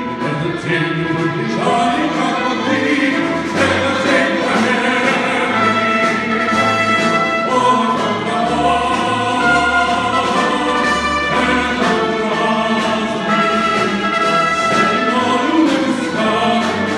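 A tenor voice singing with a symphony orchestra of strings and brass, a steady march-like song played live.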